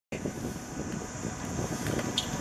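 Wind buffeting the camera microphone, an uneven low rumble over a faint outdoor hiss.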